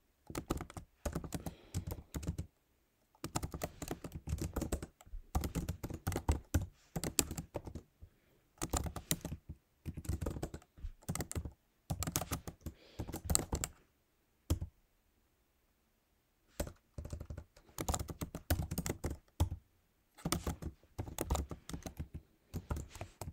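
Typing on a computer keyboard: runs of rapid keystrokes in bursts of a second or two, separated by short pauses, with a longer lull of about two seconds about two-thirds of the way through.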